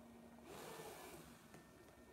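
Near silence: a faint soft breath of air for about a second, starting about half a second in, over a faint steady hum.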